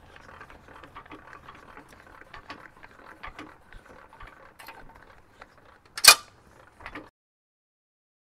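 Trailer tongue jack being cranked down, its gears clicking and rattling irregularly as the coupler lowers onto the hitch ball, then a single loud metal clack about six seconds in as the coupler comes down onto the ball, followed by a couple of lighter clicks.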